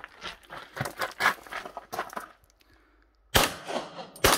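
Quick footsteps on gravel for about two seconds, then a brief pause and a single handgun shot near the end, with a short echo after it.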